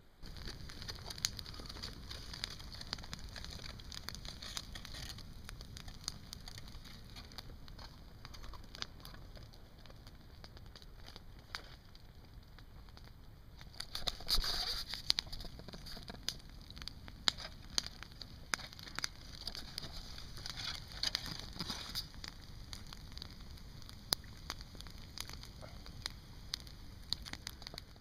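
Wood campfire crackling, with irregular sharp pops over a steady low rumble; a louder rush of noise comes about halfway through.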